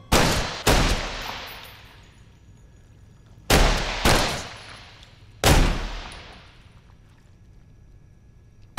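Five handgun shots fired in two quick pairs and then a single shot, each blast ringing out with a long echo in a large warehouse.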